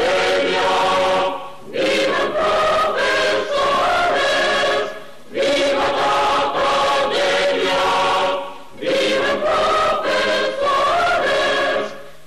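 A choir singing, in sustained phrases of about three to four seconds with short breaths between them.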